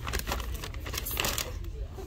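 Plastic snack bag crinkling in the hand as it is lifted and turned: a string of short crackles over a steady low hum.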